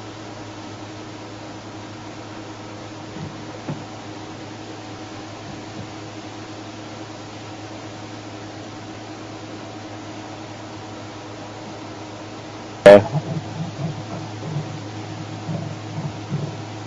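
A steady low hum with a hiss over it, then one sudden loud knock about thirteen seconds in, followed by scattered faint knocks and rustles.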